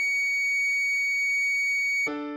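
A single high recorder note, C-sharp, held steady and pure-toned as the melody line of a tutorial backing track. Lower piano notes of an F-sharp minor chord die away beneath it in the first half second.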